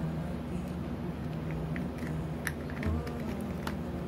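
A few faint, scattered clicks of a small screwdriver working the set screw of a Nakamichi banana plug down onto bare copper speaker wire, over a low steady hum.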